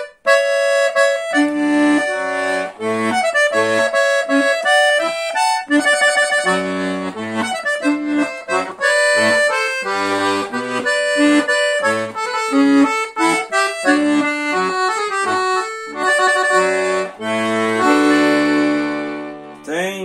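Scandalli 120-bass piano accordion playing a melody on the treble keys in the clarinet register. The bass buttons give an alternating bass-note-and-chord accompaniment in a steady rhythm.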